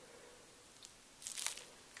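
A short crackly crinkle of a plastic piping bag of filling being handled, about a second and a half in, after a faint tick; otherwise faint room tone.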